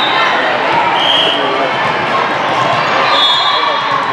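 Steady din of a large hall with several volleyball courts in play: many voices, with balls being hit and bouncing on the hard floors. A couple of short high tones cut through, about a second in and near the end.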